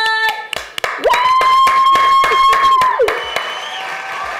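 A few hand claps in quick succession with a woman's long, high, excited cry held steady for about two seconds. It begins just as a drawn-out word ends.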